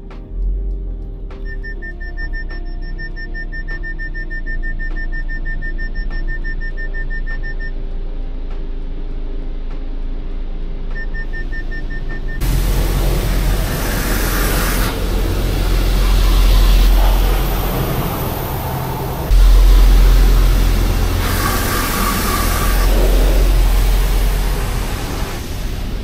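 Background music at first. Then, about twelve seconds in, the water jets of an automatic car wash start spraying over the car, heard from inside the cabin as a loud, dense rush that swells and dips as the jets pass.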